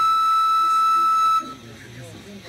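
A wooden end-blown flute holds one long, steady high note that stops abruptly about a second and a half in, likely the closing note of the tune. Low, quiet voices follow.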